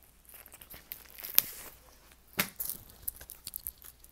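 Plastic outer sleeve of a vinyl LP crinkling and rustling as the record is handled, with scattered small clicks, a sharp click about a second and a half in and a louder knock about two and a half seconds in.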